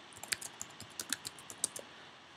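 Typing on a computer keyboard: a quick, faint run of about a dozen key clicks as a short message is typed.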